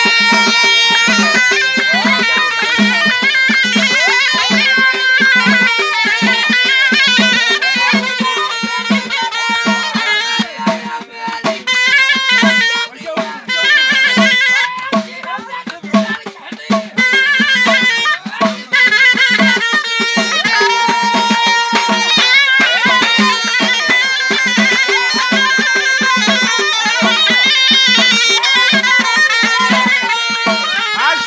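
A ghaita (Moroccan double-reed shawm) plays a loud, ornamented folk melody over a steady beat on a large double-headed drum, about two strokes a second. The melody breaks up into shorter phrases in the middle before running on again.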